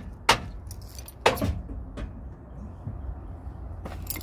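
Hammer blows on the metal of a 2010 Ford Crown Victoria's rear end as it is knocked loose for removal: two sharp strikes about a second apart, then a lighter one.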